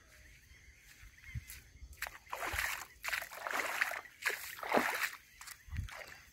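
River water sloshing and splashing close by in irregular bursts, starting about two seconds in and dying away shortly before the end.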